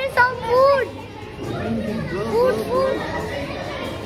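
Children's high-pitched voices: short cries that rise and fall in pitch near the start and again a couple of seconds in.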